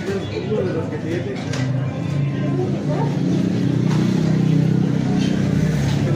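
Electric blender motor running while a licuado is being made, growing louder over the first three seconds and then holding steady.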